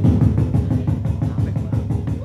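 A beatboxer performing with a handheld microphone cupped to his mouth: a fast, steady pattern of low bass pulses, roughly ten a second, like a drum roll made with the mouth.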